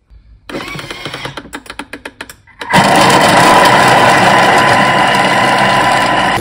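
Vorwerk Thermomix food processor: about two seconds of irregular clicking and rattling, then the motor starts and runs steadily at speed 5 with a high whine.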